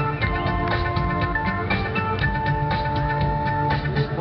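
Live synth-pop music played loud through a concert sound system: a steady beat under long held synthesizer notes, with no singing.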